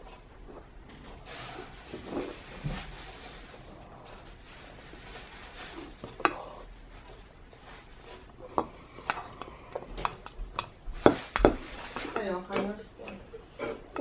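Metal spoon clinking and scraping against a small wooden bowl as a child eats, a scatter of sharp taps, most of them in the second half.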